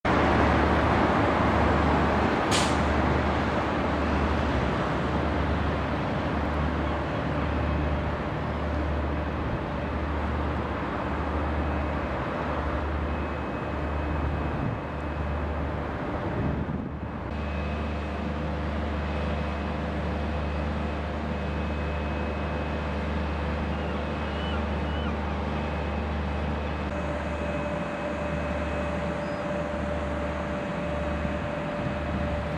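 Steady harbour ambience: a low machinery hum that pulses about once a second under a constant noise, with faint steady whines on top. A single sharp click comes about two and a half seconds in.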